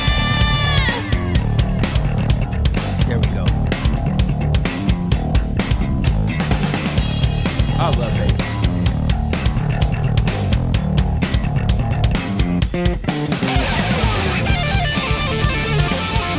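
Hard rock band playing: a held sung note ends about a second in, then drums and electric bass carry a bass section, with lead guitar near the end.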